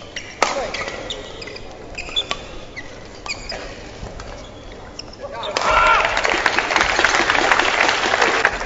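Badminton rally: sharp hits of the shuttlecock on racket strings and court shoes squeaking on the floor. About five and a half seconds in the rally ends and the crowd in the hall breaks into loud applause and cheering.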